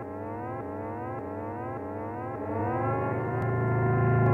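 Song intro effect: a pitched, siren-like tone climbing in repeated short upward glides over a steady low hum. It levels off and grows louder near the end.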